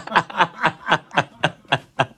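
A man laughing heartily: a quick run of short 'ha' pulses, about four or five a second, each falling in pitch.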